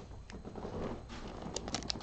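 Faint rustling and a few light clicks from a foil trading-card pack being picked up and handled.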